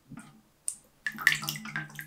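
Water splashing and trickling as a small pane of glass is lifted out of a plastic tub of water and the water runs off it, with one short click about two thirds of a second in.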